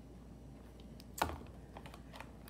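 Plastic clamshell pack of Scentsy wax being set down on a countertop: a few light plastic ticks and one sharp clack about a second in.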